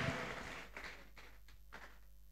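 A congregation's applause dying away, trailing off into a few scattered claps and then near silence.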